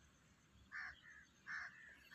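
Two faint, short bird calls about a second apart against near silence.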